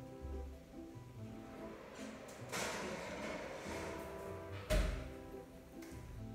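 Light background music throughout. About halfway, a second of scraping and handling noise as the dish goes into the oven; then, about three-quarters through, a single sharp thud from the oven door shutting, the loudest sound.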